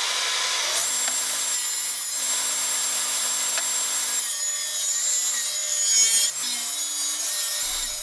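Table saw running with its blade tilted to 45 degrees, cutting a mitred edge along a veneered board. A steady high whine sits over the cutting noise, which changes about four seconds in as the board moves through the blade.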